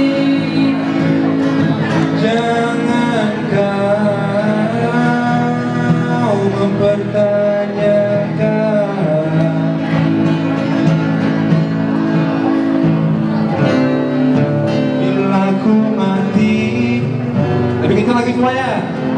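Live acoustic performance: a male voice singing over a strummed acoustic guitar through a small PA, with the singing strongest in two long phrases.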